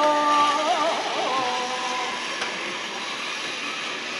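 A person's drawn-out, wavering "ohh" cry that fades out about two seconds in, over the steady whirr of a zip-line trolley running along the steel cable.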